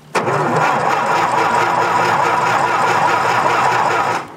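An old John Deere machine's engine cranked by its starter motor at full throttle with no choke, turning over steadily for about four seconds without catching, then stopping abruptly when the key is let go.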